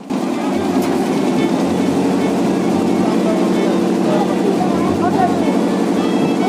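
A passenger ferry's diesel engine running steadily as the boat passes close by, with faint voices of people on board.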